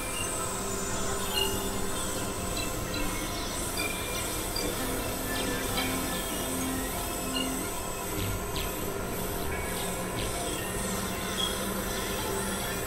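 Experimental electronic synthesizer music: a dense bed of layered, steady drone tones with short high blips and faint sweeping glides above them.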